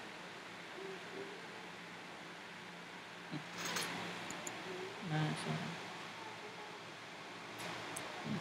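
Low microphone hiss with a faint steady hum, broken by a breathy rustle about three and a half seconds in, a couple of faint clicks, and a few faint, murmured voice sounds around five seconds in.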